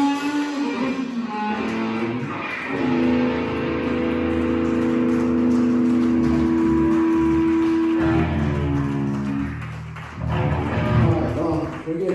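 Live rock band of two electric guitars, bass guitar and drum kit closing a song. A guitar chord is held and rings steadily for about five seconds, then dies away near the end.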